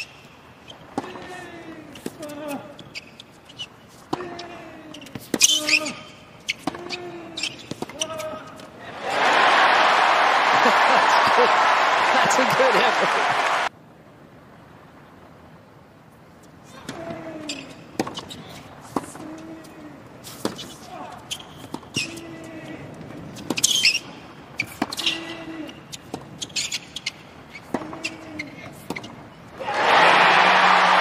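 Tennis ball bouncing on a hard court and struck by rackets, short hollow knocks about once a second with a few sharper hits. About nine seconds in, loud crowd applause and cheering breaks in and cuts off suddenly after about five seconds; then the ball sounds resume.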